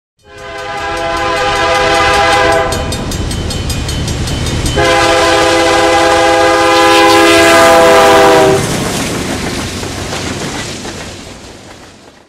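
Diesel locomotive's multi-chime air horn sounding two blasts over the rumble and rhythmic wheel clicks of a moving train. The first blast is short; the second starts about two seconds after the first ends and is longer. The train sound then fades away.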